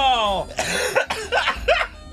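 Two men shouting and laughing in excitement, in bursts, with film music faintly underneath. One long falling cry ends about half a second in.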